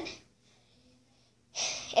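A girl's voice trailing off, a pause, then a short breathy burst from her, a sharp exhale or sniff, just before she speaks again.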